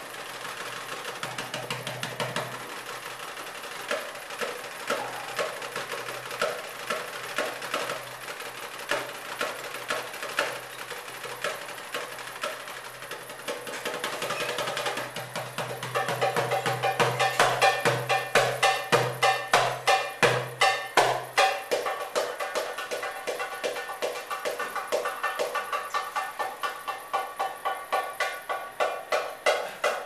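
Goblet drum (darbuka) played solo with the hands: a quick rhythmic pattern of sharp strokes. About halfway through it becomes louder and busier.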